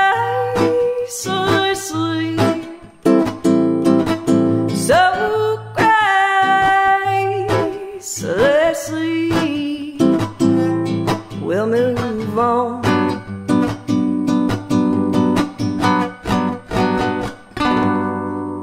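Nylon-string classical guitar being strummed and picked, with a woman singing drawn-out, gliding notes over the first part; the last stretch is guitar alone, closing on a chord that rings out near the end.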